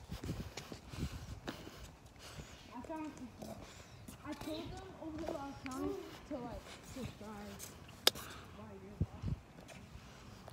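Faint, distant children's voices talking, with footsteps and low thumps of a handheld phone microphone being carried while walking, and a single sharp click a little after eight seconds in.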